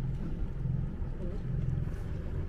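A sailing yacht's inboard diesel engine running slowly under low load, motoring in to a berth: a steady low hum.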